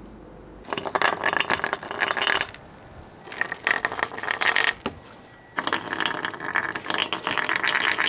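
Homemade ice Euler's disc spinning and wobbling on a concave sheet of ice in a pie pan: a fast clattering rattle of ice on ice. It comes in three separate short spins of one to three seconds each, each one cut off after a few seconds.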